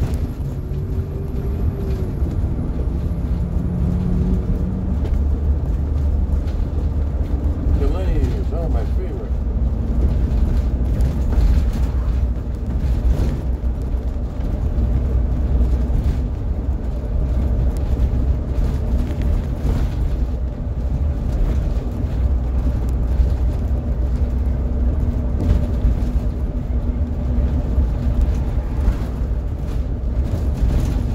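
2008 Blue Bird school bus driving at steady street speed, heard from the driver's seat inside the cab: a continuous low engine drone with road rumble.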